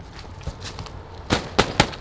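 Three sharp knocks or snaps close together, about a second and a half in, over faint rustling.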